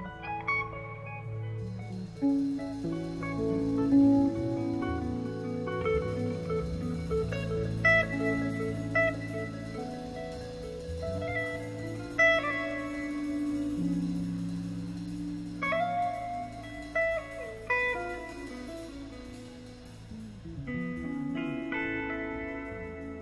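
Live instrumental jam-band music: electric guitar playing sustained lead notes over bass, Hammond B3 organ and drums, with cymbals coming in about two seconds in.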